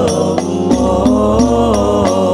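Al Banjari sholawat: a group of male voices singing a long melodic line in unison that bends up and down, over rebana frame drums beating a steady, even rhythm.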